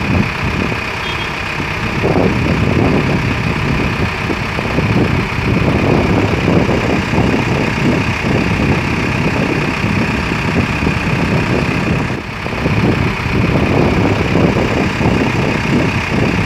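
Large vehicle engines idling in a steady drone, briefly dipping about twelve seconds in.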